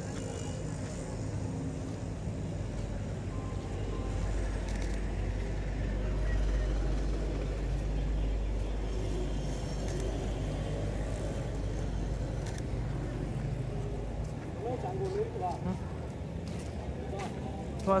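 Night street ambience: a low traffic rumble that swells over several seconds and then fades, with faint voices near the end and a single sharp click at the very end.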